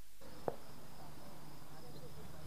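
Faint outdoor night background with a steady high-pitched insect trill, typical of crickets, coming up a moment in, and a single light click about half a second in.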